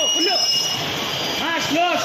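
Children's voices calling out over the running and rolling of electric bumper cars on the rink floor; the calls are loudest near the end.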